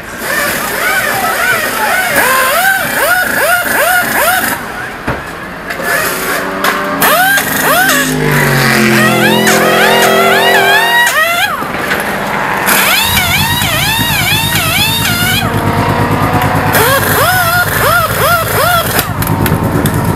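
Pit-stop air tools: pneumatic impact wrenches whirring in quick bursts, each rising and falling in pitch, as the race car's wheels are changed. About two-thirds of the way in, a car engine starts running steadily underneath.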